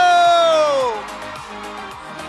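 A man's drawn-out shout through the public-address system, held for about a second and falling in pitch as it ends. Quieter music then comes in.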